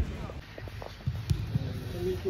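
Faint distant voices over a low, steady outdoor rumble, with one sharp knock about a second and a half in.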